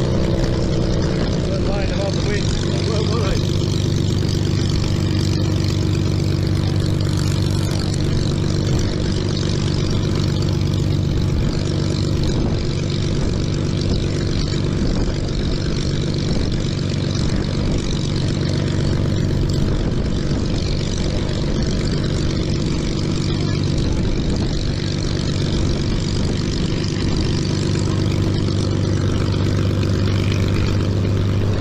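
Two-seat Spitfire's Rolls-Royce Merlin V12 engine running steadily on the ground, a deep even drone with the propeller turning. Near the end the aircraft begins to taxi away.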